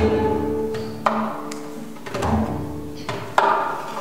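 Hand-played frame drum in live ensemble music: a few deep strokes about a second apart over a sustained low instrumental tone, with no voice.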